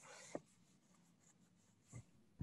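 Near silence: faint room tone through a video-call microphone, with a soft rustle and a single click just after the start.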